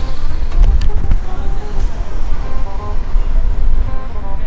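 Wind rumbling heavily on the microphone of a camera carried on a moving bicycle, with a few short knocks from the bike going over the pavement. Faint pitched tones come in a little past the middle.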